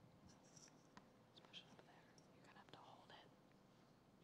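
Near silence: quiet room tone with faint whispering and a few small ticks.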